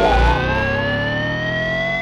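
A single sustained electronic tone from the film score, gliding slowly upward in pitch, with a low thump just as it begins.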